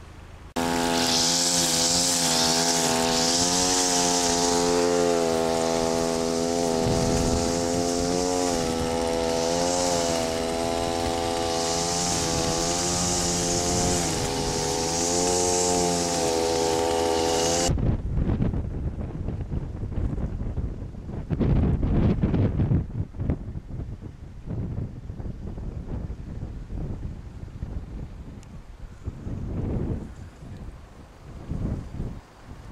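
Small digger's engine running steadily, its pitch dipping slightly now and then under load, until it cuts off abruptly about two-thirds of the way in. Uneven wind noise and rustling with scattered knocks follow.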